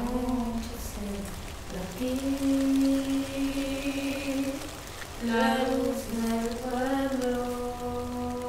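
Slow, chant-like singing in long held notes, one held for over two seconds, then a short break before the melody moves on in drawn-out steps.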